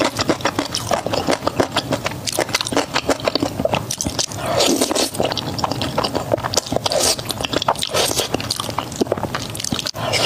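Close-miked eating sounds: wet chewing and smacking of saucy spicy noodles, with slurps as a mouthful of noodles is drawn in, a dense run of irregular moist clicks.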